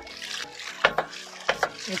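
Homemade hydraulic ram pump cycling: water gushes and splashes out of its waste valve, broken by two sharp knocks as the valve slams shut.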